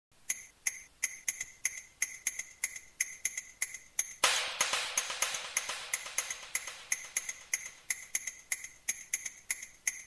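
Opening of an uplifting trance track: light electronic percussion ticks about three a second. About four seconds in, a filtered noise swell comes in suddenly and slowly fades.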